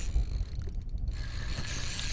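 Spinning reel being cranked, its gears clicking as it takes up line to tighten on a fish that has taken the bait, over a steady low rumble of wind on the microphone.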